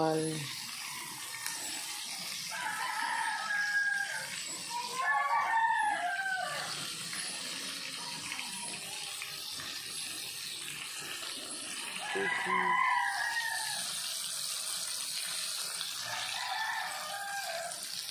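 A rooster crows about four times, the second and third crows the loudest, over the steady sizzle of chicken deep-frying in hot oil.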